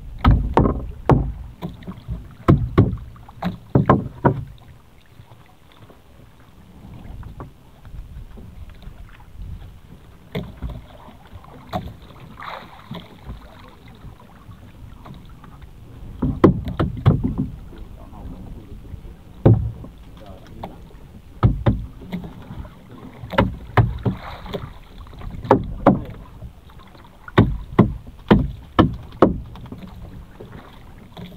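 Knocks and thumps on a small fishing boat, coming in irregular clusters of sharp strikes over a low steady background noise, with a quieter stretch through the middle.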